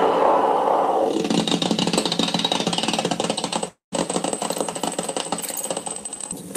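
Experimental noise from an open spring reverb tank driven through a feedback pedal: a loud drone gives way about a second in to a dense crackling, rattling texture. The sound cuts out completely for a split second, then returns with a thin high whine over the crackle.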